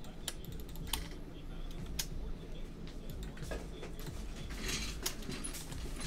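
Typing on a computer keyboard: scattered, irregular key clicks over a low steady hum.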